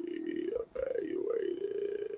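A man's voice in a long, low closed-mouth hum, like a drawn-out 'mmm', wavering slightly in pitch. It breaks off briefly just under a second in.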